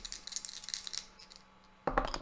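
Two dice rattled and clicking together in a hand, then thrown into a felt-lined dice tray near the end, landing with a sharp knock and a brief tumble.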